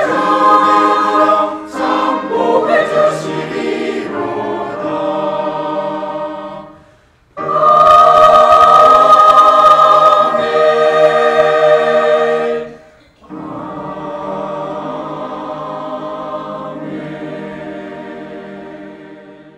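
Mixed church choir singing a sacred anthem in full, sustained chords, broken by two short pauses, about seven and about thirteen seconds in. The final chord is softer and fading near the end.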